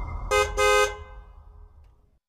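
A car horn honking twice, a short toot then a longer honk, over a low rumble that fades away.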